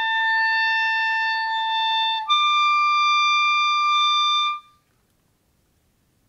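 Clarinet playing a held high note, then slurring smoothly up to a second, higher held note about two seconds in, a demonstration of the half-hole technique for a smooth interval transition. The tone stops cleanly about four and a half seconds in.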